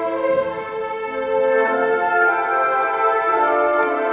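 Symphony orchestra playing classical music, bowed strings holding sustained chords that shift a few times, in a large, echoing stone church.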